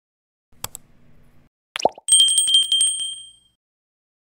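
Subscribe-button animation sound effects: a quick click, a short pop falling in pitch, then a small bell ringing in a fast trill for about a second and a half before fading out.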